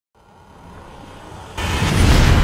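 Logo-intro sound effect: a low rumble swells up out of silence, then a loud boom-like hit with a rushing noise comes in about one and a half seconds in.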